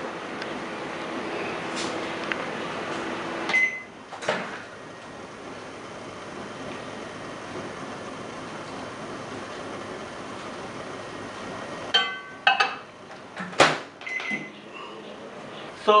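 Microwave oven running with a steady hum while it heats a beaker of water holding a dialysis membrane. About three and a half seconds in the hum stops with a short beep, and the door opens with a click. Later there is clicking and clatter as the beaker is handled, with one loud click near the end.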